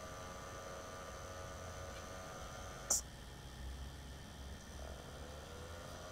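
Small dual cooling fans on a Raspberry Pi heatsink running with a faint steady hum and whine, which sounds really irritating; one of the fans is bad and vibrates. A short click about three seconds in, after which the whine drops away, and a faint rising tone near the end.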